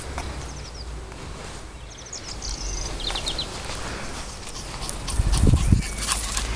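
Birds chirping in short runs of quick high notes over a low steady rumble, with a few heavy low thumps near the end.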